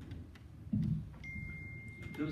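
A microphone stand being handled and adjusted, with a thump about two-thirds of a second in. After it comes a faint, steady, high-pitched tone.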